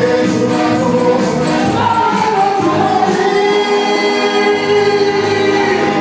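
Gospel choir singing into microphones, amplified through a PA system, with long held notes in the second half.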